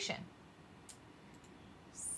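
A single faint click of a computer mouse button about a second in, against quiet room tone.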